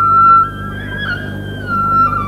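Banhu, the coconut-shell Chinese bowed fiddle, playing a bright, high singing melody with vibrato. It steps up in pitch about half a second in and slides back down near the end, over soft string orchestra accompaniment.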